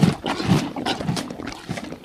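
Zebra calling: a run of short, low, barking grunts, several in the first second and a half.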